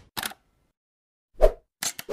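Short sound effects from an animated logo intro: a brief high click, a soft pop about a second and a half in, and another sharp click just before the end, with silence between.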